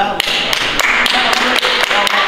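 Applause from a small audience: many quick hand claps echoing in a sports hall, breaking out just after the start.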